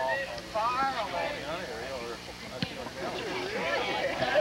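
Indistinct voices of soccer players calling out across the field, with a single sharp knock a little past halfway.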